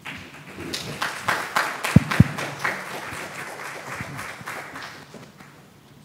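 Audience applauding, building up about a second in and dying away by about five seconds. Two sharp thumps come close together about two seconds in.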